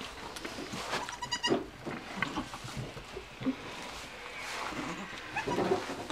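Nigerian Dwarf goats in a kidding pen: one short, high bleat about a second in, then a few softer sounds, as a doe cleans her just-born kid.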